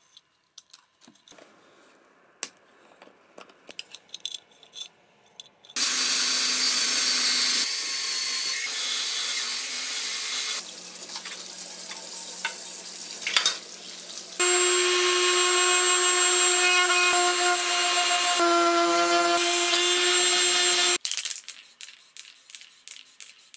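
Faint clicks of a screwdriver working on a metal headlight housing. About six seconds in, water runs loudly from a kitchen tap over the parts being washed, in several cut segments. About two-thirds through, a steady machine hum with a held pitch takes over and cuts off suddenly near the end.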